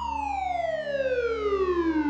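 Song intro: a synthesized tone sliding steadily down in pitch over a low sustained drone, slowly growing louder.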